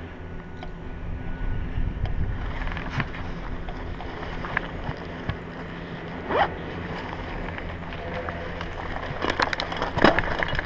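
Wind buffeting a GoPro's microphone in a low, steady rumble, with scattered clicks and rustles of the camera being handled and moved, and a denser run of clicks near the end.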